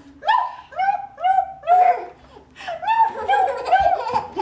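A baby laughing: two runs of short, high-pitched rhythmic laughs with a brief pause between them.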